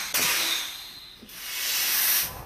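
Whoosh sound effects on a logo transition: a rushing hiss that fades over about a second, then swells again near the end.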